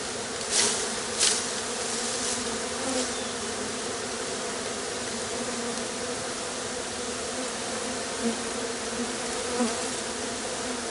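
Honeybee swarm buzzing steadily: the low, even hum of many bees flying around the swarm box. Two brief, louder noises come about half a second and just over a second in.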